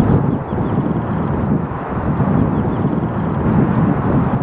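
Wind buffeting the camera microphone: a loud, uneven low rumble that swells and dips.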